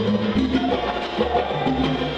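Live salsa band playing an instrumental passage, with a walking bass line under percussion strikes.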